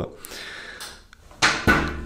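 Small parts handled on a hard tabletop, with one sharp knock about one and a half seconds in as a part is set down.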